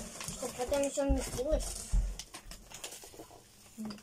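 Voices talking briefly in the first half, over the crinkle and rustle of plastic sweet wrappers and a foil snack bag being handled and opened: a run of small crackling clicks.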